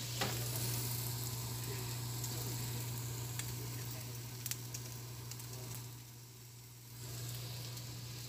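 Thin slices of pork belly sizzling in a non-stick frying pan, a steady hiss with a few sharp fat pops; the sizzle dies down briefly about six seconds in. A steady low hum runs underneath.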